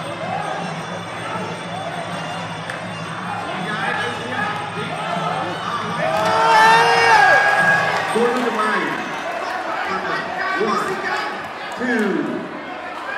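Fight-arena crowd shouting and cheering over ringside music, with one loud, drawn-out shout about six seconds in.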